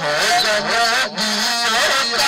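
A man singing a naat (unaccompanied devotional song) into a microphone, in long, wavering held notes.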